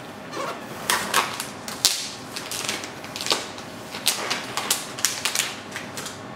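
Irregular crackling and clicking of a clear plastic protective sleeve on a laptop as it is unwrapped and handled.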